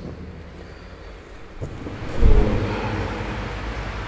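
A pause in the talk with low room noise, then a dull low thump on the microphone a little over halfway, followed by low rumbling handling noise.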